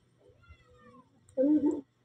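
A cat meowing: a thin cry falling in pitch, then a louder, lower call about one and a half seconds in.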